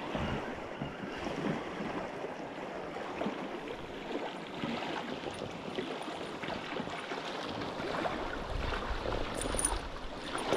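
Fast-flowing river water rushing over rocks, a steady wash of noise, with a brief low rumble near the end.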